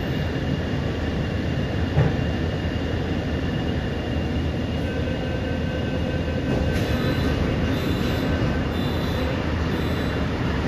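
Steady hum and hiss inside a Mumbai Metro MRS-1 car standing at a platform, with a single click about two seconds in. In the last few seconds a faint high beep repeats at under a second's spacing.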